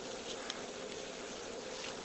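Faint steady hiss with a steady faint hum: the background noise of the recording, room tone between sentences.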